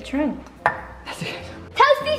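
A single sharp clack of kitchenware about two-thirds of a second in, with short wordless voice sounds just before it and again near the end.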